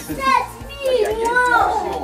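A young baby's high-pitched happy vocalizing, two drawn-out wavering calls while being bounced on a lap, with quiet background music underneath.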